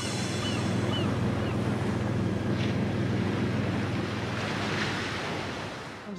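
Steady rush of ocean surf and wind with a low rumble underneath, easing off near the end.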